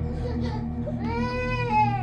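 A high, drawn-out crying wail that begins about a second in, rising and then falling in pitch, over a steady low music drone.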